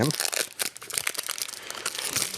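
Crinkling and rustling of a hockey card pack's wrapper and cards being handled, in a string of quick crackles.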